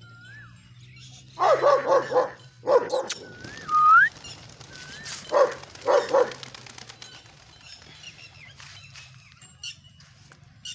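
Dog barking in clusters: a quick run of barks about a second and a half in, then more barks around three, four, and five to six seconds in.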